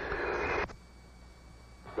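Hiss of an open radio intercom channel that cuts off sharply with a click about two-thirds of a second in, as the transmission ends. A fainter background hiss follows.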